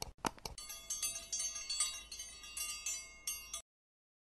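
Subscribe-button animation sound effect: a couple of quick mouse clicks, then a bright tinkling bell chime lasting about three seconds that cuts off suddenly.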